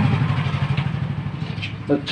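An engine running with a low, fast, even throb that fades away.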